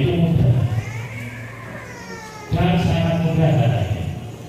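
A man singing unaccompanied into a handheld microphone, drawing out long held notes: one phrase ends about a second in, and after a quieter stretch another begins about two and a half seconds in.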